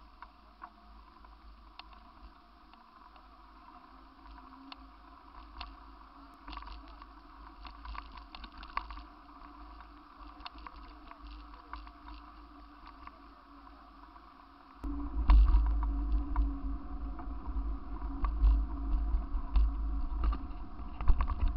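Ride noise picked up by a camera on a moving bicycle: small rattles and clicks over a low rumble, which becomes much louder and rougher about fifteen seconds in.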